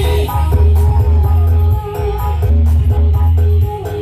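Loud music played through a miniature sound system's speaker boxes, with a heavy bass line of held notes changing pitch every half-second or so under a melody.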